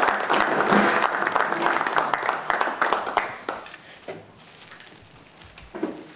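A small group of people applauding, the clapping dying away about three and a half seconds in.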